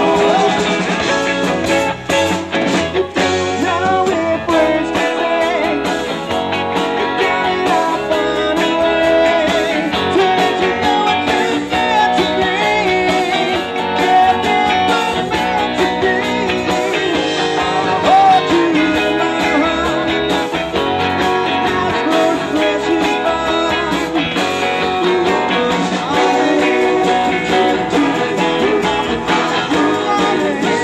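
Live band playing a surf-rock song on electric guitars, bass and drums.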